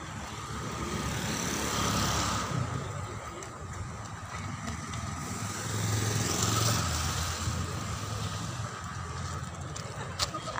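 Road traffic going by: a low vehicle rumble that swells twice, about two seconds in and again around six to seven seconds in.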